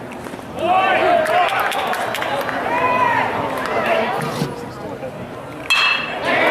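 Spectator voices chattering in the stands, then a sudden sharp ping near the end as a metal baseball bat strikes the ball.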